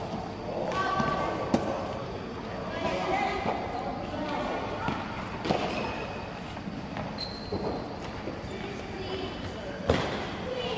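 Tennis balls being hit with rackets and bouncing on an indoor court: several sharp knocks at irregular intervals, the loudest about a second and a half in. Children's voices and chatter carry on underneath, in a large echoing hall.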